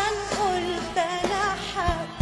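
Arabic pop song: a lead vocal sliding and wavering between notes over instrumental accompaniment with occasional drum hits.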